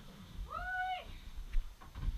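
A single high-pitched vocal call about half a second long, its pitch rising and then falling.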